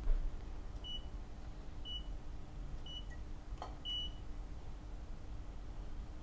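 Godox AD300Pro studio flash beeping four short high beeps about a second apart as its output is stepped down, with a faint click about three and a half seconds in.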